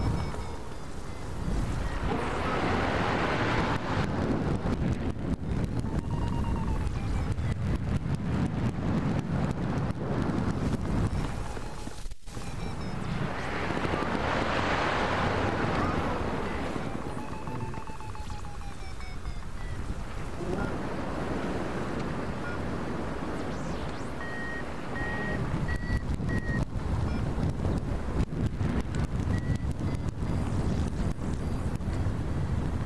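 Airflow rushing over a hang glider's wing-mounted camera microphone in flight, swelling and easing as the glider turns. Faint beeping tones that slide in pitch come and go through it, with a short run of evenly spaced beeps near the end, like a flight variometer signalling lift.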